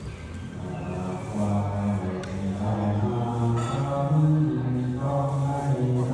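Thai Buddhist monastic chanting: low male voices holding long, steady notes in a slow recitation, starting about half a second in and growing louder.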